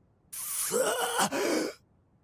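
A man's strained, breathy voice says one short Japanese line, 'Damn... you...', lasting about a second and a half.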